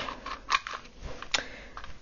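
Light clicks and rustling from handling a hot glue gun and a small cone, with two sharper clicks, about half a second in and a little past a second in.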